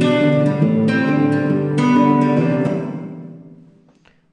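Recorded acoustic guitar chords played back through a reverb plug-in, struck about once a second. About three seconds in the playing stops, and the reverb tail fades away over the last second.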